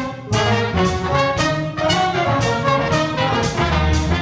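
A big jazz band playing: trumpets, trombones and saxophones over a walking bass line, with a steady cymbal beat about twice a second.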